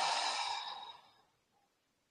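A man's long, audible exhale during a deep-breathing exercise, fading out about a second in.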